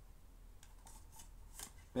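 Plastic DVD cases being handled and sorted by hand: a few faint light clicks and rustles.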